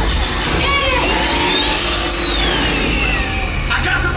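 Loud car-chase soundtrack of a theme-park ride film: vehicle engine rumble and action effects mixed with music. A long whine rises and then falls in the middle.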